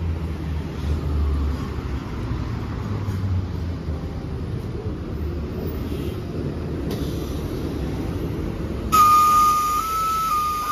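A diesel-electric hybrid city bus running a low, steady rumble as it pulls in to a stop. About a second before the end, a loud whistle-like tone starts abruptly and steps up and down in pitch.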